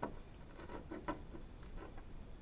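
A few scattered light clicks and ticks of small plastic waterproof wire-connector pieces being handled and pushed over wires.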